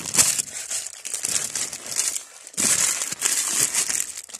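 Crinkling and rustling right at the microphone in irregular bursts, with a louder, longer stretch near the end.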